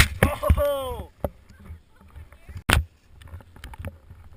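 Snowboard crash into powder: a loud impact of board and body hitting the snow, and the rider lets out a short yell that falls in pitch. Then mostly quiet rustling, broken by one sharp knock near the middle.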